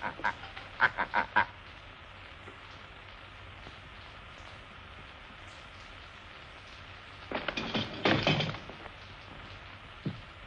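A man's short laughter in the first second and a half, then only the steady hiss of an old film soundtrack. About seven seconds in comes a loud, harsh, honking cry lasting about a second and a half.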